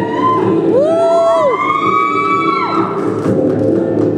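Music playing through a hall's sound system, with several audience whoops and cheers that rise and fall over it from about a second in until near three seconds.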